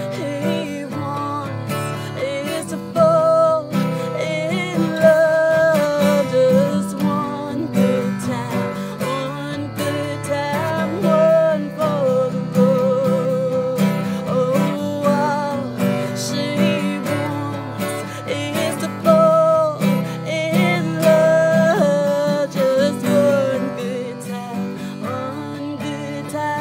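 A woman singing a slow song over strummed acoustic guitar, holding long notes with a waver in them.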